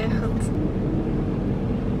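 Steady low rumble inside a car cabin, typical of the engine idling.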